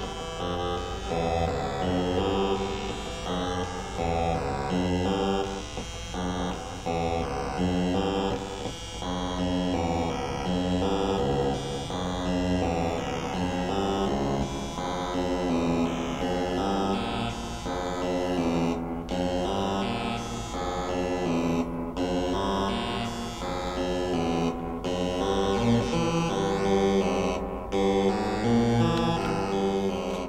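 An 8-step analog sequencer built on the Baby 10 design drives a synthesizer through reverb. It plays a repeating loop of stepped synth notes whose pitches shift as the sequencer's knobs are turned.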